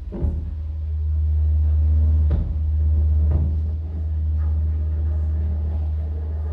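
Deep, steady electronic bass drone played live through a club PA, swelling about a second in. Three sharp hits ring out over it: one just after the start, one a little past two seconds and one a little past three.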